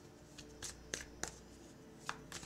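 A tarot deck being shuffled by hand to draw a clarifying card: a few short, crisp card snaps, roughly every third of a second.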